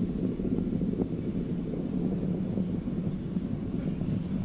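SpaceX Falcon 9 first stage's nine Merlin engines firing during ascent, heard as a steady low rumble.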